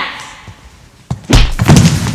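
A sharp knock about a second in, then a loud, heavy thump with a rattling tail, a hard impact on the stage that draws a pained cry right after.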